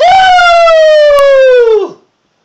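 A person's loud, long wail held for nearly two seconds, its pitch sliding slowly down and then dropping away at the end. A faint click comes just over a second in.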